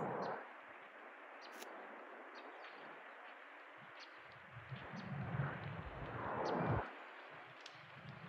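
Quiet open-air ambience: a steady soft hiss with scattered faint, short high chirps of birds. A louder low rumble on the microphone swells from about four and a half seconds in and stops just before seven.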